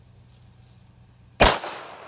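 A single shot from a Colt .45 ACP semi-automatic pistol about one and a half seconds in, a sharp crack followed by a short echo dying away.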